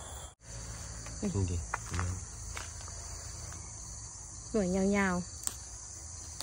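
A steady, high-pitched chorus of insects trilling in overgrown grass and vegetation, continuing unbroken under short bits of speech.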